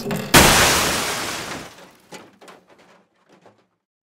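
A single loud crash from the interactive LEGO band, set off by placing its larger instrument on the stage; it starts suddenly and dies away over about a second and a half, followed by a few faint clicks.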